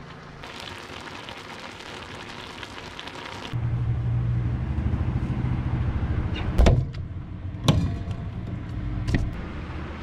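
A gas stove burner hissing for about three seconds, then a steady low hum with a few sharp clicks and knocks as a refrigerator door is handled and opened.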